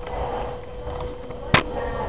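One sharp click about one and a half seconds in, over a steady faint hum and room noise.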